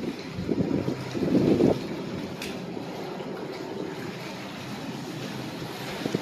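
Wind buffeting the phone's microphone, gustier in the first two seconds, over a steady wash of small waves on a rocky shoreline.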